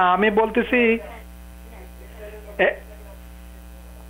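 Steady mains hum, with a caller's voice over a telephone line, thin and cut off in the treble, during the first second and one brief sound about two and a half seconds in.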